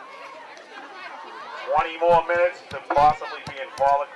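Low crowd chatter, then loud voices shouting close to the microphone from a little under two seconds in.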